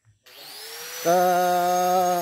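Handheld electric angle grinder starting up: its motor spins up with a rising whine, then runs steadily at speed.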